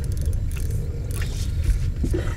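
Steady low rumble of wind buffeting the microphone on an open boat, with faint water noise and a few light clicks.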